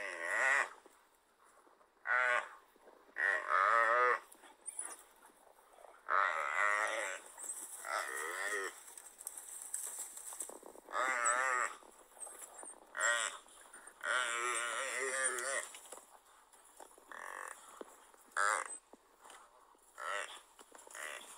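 Gemsbok (oryx) bellowing in distress over and over while a pack of African wild dogs attacks it: about ten wavering, moo-like calls, each half a second to a second and a half long.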